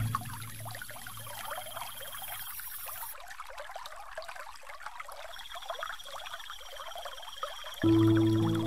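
Trickling, running water from a relaxation-music soundtrack, under a soft sustained music pad that dies away in the first couple of seconds. A new, louder chord swells in at the very end.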